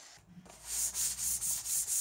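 Hand sanding the freshly jigsaw-cut edge of a thin poplar plywood panel with a sanding block: quick back-and-forth strokes, about five a second, starting about half a second in.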